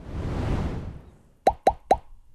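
A soft whoosh that swells and fades, then three quick pops about a second and a half in, each a short blip rising in pitch: a cartoon-style pop sound effect that goes with a subscribe-button animation popping onto the screen.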